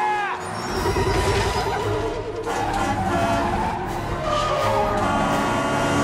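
Film soundtrack of a city bus scene: a heavy vehicle's low rumble mixed under loud, dramatic music. A few short high falling glides come at the very start, and the sound cuts off sharply at the end.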